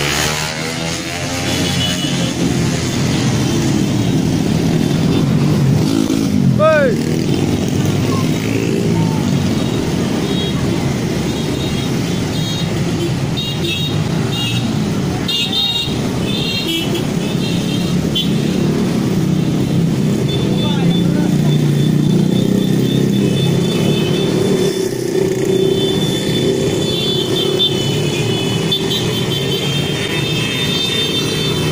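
A stream of small motorcycles and scooters passing close by, their engines running in a continuous rumble, with people's voices mixed in. A brief pitched toot sounds about seven seconds in.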